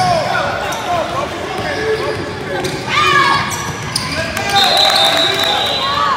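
Basketball game sounds in an echoing gym: a ball bouncing on the hardwood court under players' and spectators' shouting voices.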